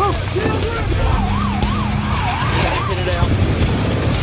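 An emergency-vehicle siren wailing in quick rises and falls, about two sweeps a second, over a music track with a steady low bass.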